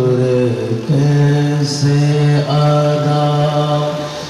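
A man's voice chanting in long held notes that step from one pitch to another, a melodic recitation, with a short hissing consonant about two seconds in.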